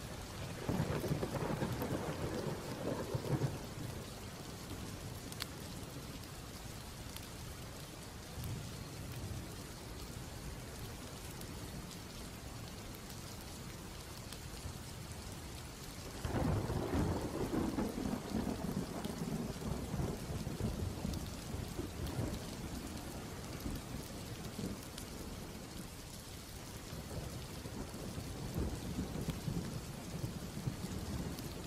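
Steady rain with two long rolls of thunder, one just after the start and a louder, longer one a little past halfway.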